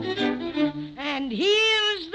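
Old-time radio opening theme music with strings. About halfway through, a high note swoops down, then rises back up and holds.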